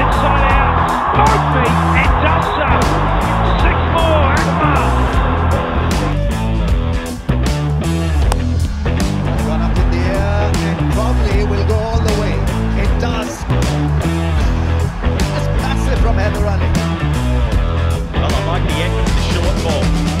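Background rock music with guitar and a steady beat.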